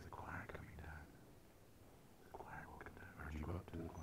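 Faint, hushed voices speaking low in two short stretches, one at the start and one in the second half, in a reverberant church.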